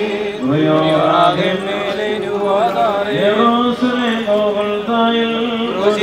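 Voices chanting an Orthodox liturgical hymn, a melodic line with long held notes and overlapping voices.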